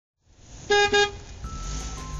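Two quick toots of a vehicle horn, beep-beep, less than a second in, followed by a low rumble with a faint steady tone.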